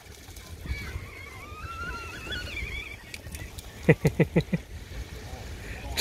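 A man's short burst of laughter, about five quick laughs, some four seconds in. Before it a faint, high, wavering call is heard.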